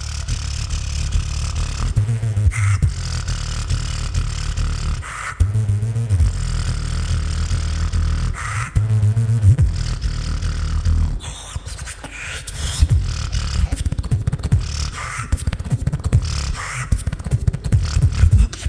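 Solo beatboxing into a handheld microphone, amplified through a PA: long stretches of deep, sustained bass tones for the first ten seconds or so, then from about twelve seconds in a quicker, choppier beat of short percussive hits.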